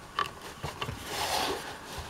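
Hard plastic toy playset parts being handled: a few light clicks, then a soft rubbing of plastic on plastic as the console piece is moved.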